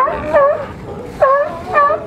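California sea lions barking in the water: four short calls in two quick pairs, each dipping and rising in pitch.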